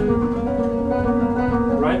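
Nylon-string classical guitar playing a passage of sustained notes over a held bass note, with a short rising squeak near the end from a finger sliding along a wound string.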